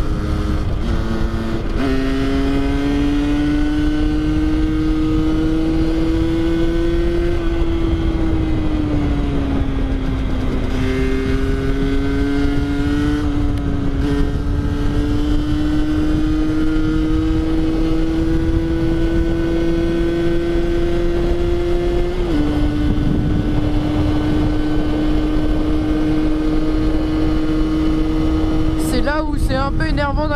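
Rieju MRT 50's two-stroke single-cylinder engine, with its stock exhaust derestricted, running steadily under way as heard from the bike. The engine note drops about two seconds in, sinks gradually between about seven and ten seconds in, then picks up again and holds steady.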